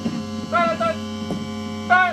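Steady electrical mains hum from an amplified electronic music rig, with short pitched 'ba'-like blips over it: two about half a second in and a louder one near the end.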